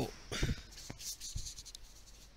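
Phone handling noise: a scratchy rustle with soft knocks about half a second in as the phone is moved and rubbed against fur or clothing, then a couple of sharp clicks.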